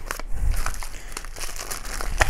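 Clear plastic wrapping and paper being handled and crinkled by hand: an irregular run of rustles and crackles.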